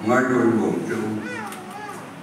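Speech in a large hall: a man's voice tails off over the first second or so, followed by a brief higher-pitched voice gliding up and down.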